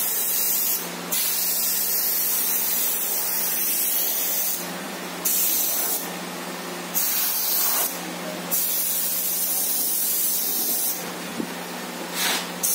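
Gravity-feed airbrush spraying paint in five hissing bursts, the trigger released briefly between them, with a longer pause near the end.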